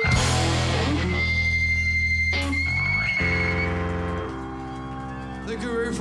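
Live punk rock band crashing on the final chord of a song: drums and distorted electric guitar and bass hit together, and the chord rings on with a steady high-pitched guitar-feedback whine. A second crash comes about two and a half seconds in, then the low chord hangs and slowly fades.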